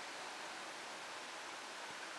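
Faint, steady hiss of room tone and recording noise, with no distinct sound in it.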